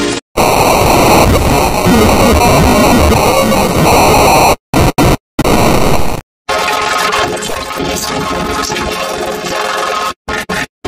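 Logo-jingle music drowned in harsh, heavily distorted noise, a dense loud wash. It cuts out abruptly several times in the middle and comes back.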